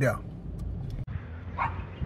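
A single short dog bark about one and a half seconds in, faint over a low background rumble.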